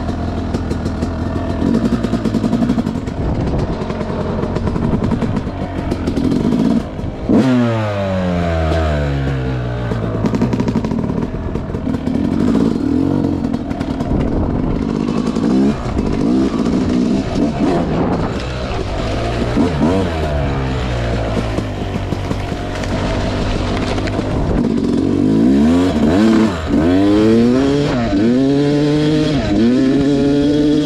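Yamaha YZ250X 250cc two-stroke single-cylinder dirt bike being ridden, its engine revving up and down as the throttle is worked. About seven seconds in the revs drop sharply and climb again, and near the end they dip and rise several times.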